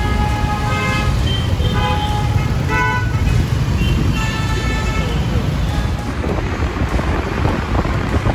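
City traffic at a standstill: several vehicle horns honk in turn, short and longer blasts, over a steady low rumble of idling engines. Near the end the sound turns into a broader rush as the two-wheeler pulls away.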